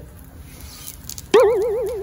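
A sudden, wavering tone with a fast, even wobble in pitch, like a cartoon boing sound effect. It starts about a second and a half in and fades away over about a second.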